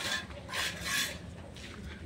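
Three rasping, scraping strokes in the first second, then quieter.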